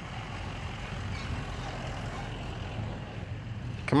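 Steady low rumble of a motor vehicle engine running nearby, holding at an even level.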